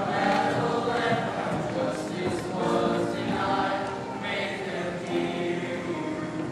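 Large youth choir singing together, holding long sustained notes.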